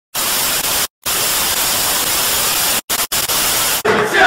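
Loud television-style white-noise static, an even hiss. It cuts out abruptly for a moment about a second in and again in short breaks near the end.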